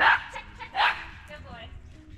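A small dog barking twice while running the course: one sharp bark right at the start and a second just under a second later, then quieter.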